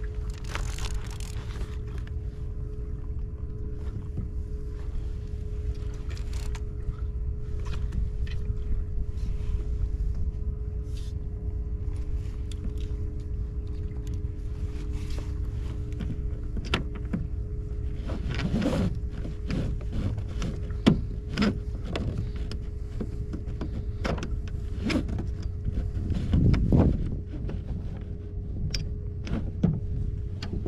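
Steady low rumble of wind and water around a kayak at sea, with a faint steady hum. Scattered clicks and knocks come from handling the fishing rod and reel, the loudest near the end.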